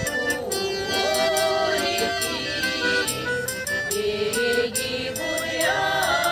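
A group of women singing a Russian folk song together in several voices, with wavering held notes, accompanied by an accordion playing steady chords in an even rhythm.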